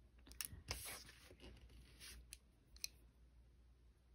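Faint handling sounds from fingers with long acrylic nails working a nail brush: a few light clicks and rustles, mostly in the first second, with one more click near the three-second mark.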